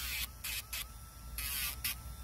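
Battery-operated Dremel rotary tool with a sandpaper drum running on its low setting, a steady whine, broken by several short bursts of gritty grinding hiss as the drum touches and lifts off a dog's toenail.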